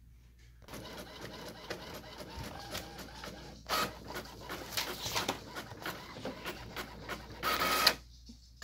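Inkjet printer printing a page: the mechanism starts about half a second in, runs with rapid clicking as the print head shuttles, and gets louder in two surges, about four seconds in and just before the end, as the paper moves through.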